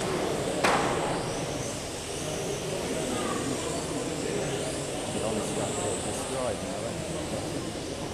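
High whine of 1/12-scale electric RC racing cars with 10.5-turn brushless motors, rising and falling as they accelerate and brake round the track, over a background of voices echoing in the hall. A single sharp knock comes about half a second in.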